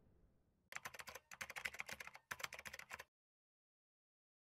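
Keyboard-typing sound effect: fast, crisp key clicks in three quick runs over about two and a half seconds, then a sudden cut to silence.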